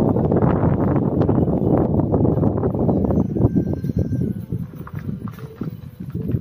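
Wind buffeting the microphone through an open car window, mixed with road and tyre noise from a car driving on a hill road, with scattered small knocks. It eases off toward the end.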